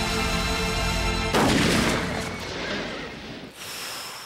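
Film soundtrack: orchestral score holding a sustained chord, then a sudden loud boom about a second and a half in that trails away over the next two seconds.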